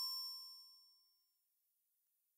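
The last ring of a bell-like chime note closing an intro jingle, dying away within the first second, followed by silence.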